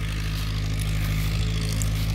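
Ford farm tractor's engine running steadily at a constant speed, a low even hum with no change in pitch.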